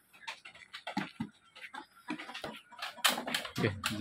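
Goat's hooves clicking and clattering irregularly on slatted bamboo as it is led down from a raised pen, with a louder clatter about three seconds in.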